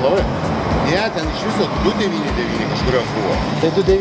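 People's voices talking, mixed with the noise of road traffic passing close by, with irregular low knocks throughout.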